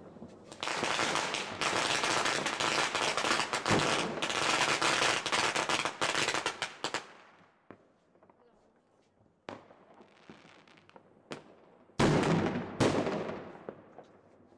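New Year's Eve fireworks and firecrackers going off: a dense, rapid run of crackling bangs for about six seconds, then a few scattered single cracks, and two loud bangs near the end that trail off.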